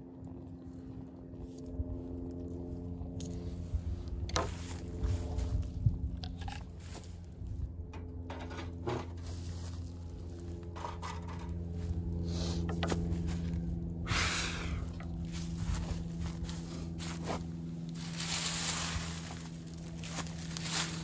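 Handling noises: scattered clicks and knocks as a Swiss Army knife's saw blade is opened and a small metal mesh stove is moved, then dry leaves rustling as they are gathered by hand near the end. A steady low hum runs underneath.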